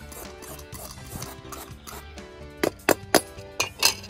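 Background music, with a hand julienne peeler scraping strips off a raw carrot on a plastic cutting board, and about five sharp clicks in quick succession in the last second and a half.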